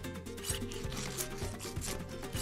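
Three short scratchy rubbing sounds, about two-thirds of a second apart, as tweezers scrape at a nose, over background music.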